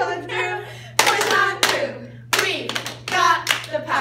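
A group clapping out a cheer rhythm: a series of sharp hand claps starting about a second in, with voices shouting chant words between the claps.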